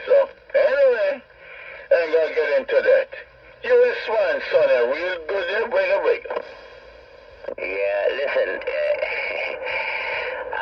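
Voices of radio operators talking over an AM radio channel, heard through the receiver's loudspeaker, thin and narrow-sounding. There is a short lull about six and a half seconds in.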